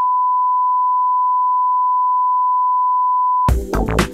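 Steady, pure test tone of the kind broadcast over television colour bars, held at one unchanging pitch, signalling the programme has been interrupted. It cuts off about three and a half seconds in, when electronic music with a drum-machine beat starts.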